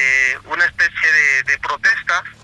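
A man speaking Spanish: a long drawn-out hesitation sound "eh" that ends about half a second in, followed by quick, fluent speech.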